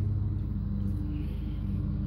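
A steady low hum with a few held low tones, even in level throughout, and no speech.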